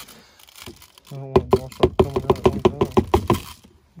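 Plastic tubs and a plastic bottle being handled, with crinkling and a quick run of clicks and taps as Tannerite powder is poured into the bottle. A man's voice runs over it from about a second in.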